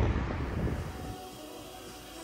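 Low wind rumble on the microphone that dies away in about the first second, followed by faint background music with held notes.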